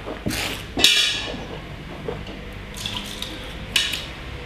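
Wet slurping and swishing of red wine in a taster's mouth, air drawn through the wine in a few short bursts, the loudest about a second in.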